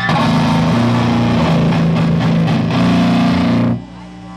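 Live rock band playing loudly: distorted electric guitar, bass guitar and drums together, stopping abruptly near the end and leaving a low amplifier hum.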